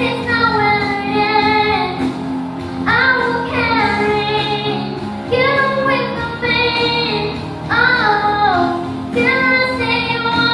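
A young girl singing into a handheld microphone through a loudspeaker, in several long phrases of held notes that slide down in pitch.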